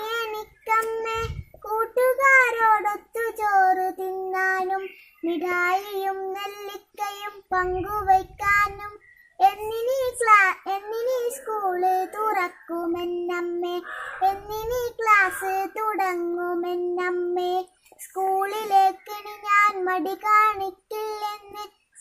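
A young girl singing solo without accompaniment, in phrases of long held notes with a slight waver in pitch and short breaks between them.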